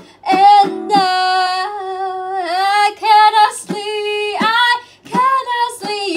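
A woman singing long held notes in several phrases, each about a second or more, with short breaks between them.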